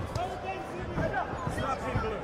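Spectators shouting and calling out around an amateur boxing ring, with several dull thuds from the boxers in the ring.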